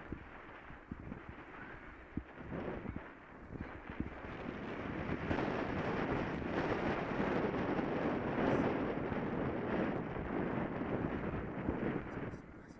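Wind buffeting the microphone of a bicycle-mounted camera while riding, growing louder about four seconds in and staying strong until near the end. Scattered knocks from the bike rolling over the bumpy path come through in the first few seconds.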